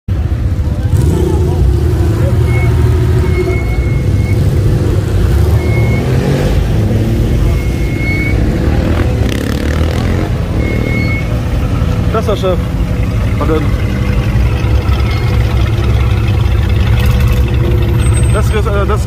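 A classic rally car's engine running at low speed as it rolls past close by, with people talking around it.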